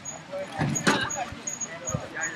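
Several people talking in the open, with a brief sharp noise just before a second in, the loudest moment.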